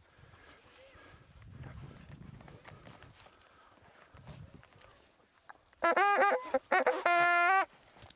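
Faint low background noise, then near the end a French hunting horn (trompe de chasse) sounded for under two seconds in a few short, steady notes that change in pitch by steps. The player is short of breath.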